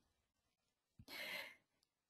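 Near silence with one short, soft breath from the presenter about a second in, between sentences.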